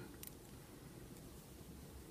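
Near silence: faint room tone, with one faint tick about a quarter second in.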